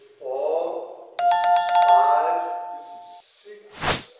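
An electronic chime, like a phone ringtone, starts suddenly about a second in with two steady pitches and a quick repeating pattern, and sounds for about two seconds over low talk. A single sharp knock comes just before the end.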